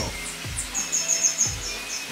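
Small birds chirping: a quick run of short, high notes about a second in, then a faint whistle, over background music with a steady low beat.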